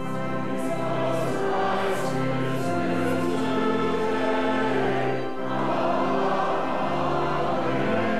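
Many voices singing a hymn together in chorus, with organ accompaniment holding long sustained chords underneath.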